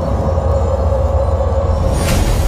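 Dark cinematic intro sound: a loud, steady deep rumble under a single held mid-pitched drone tone.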